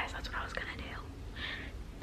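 A woman whispering quietly, breathy and without voice.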